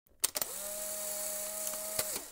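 Intro sound effect: a few quick clicks, then a steady hiss over a low hum and a higher held tone.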